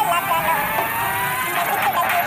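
Electronically pitched cartoon singing voice holding a long, slightly falling note, then breaking into shorter rising notes over backing music.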